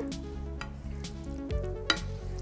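A wooden spoon stirring cooked fusilli through warm pesto sauce in a pan: soft scraping and small clicks over a light sizzle, with one sharper knock near the end.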